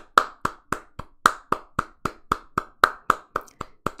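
One person clapping her hands steadily, about three to four claps a second, close to the microphone.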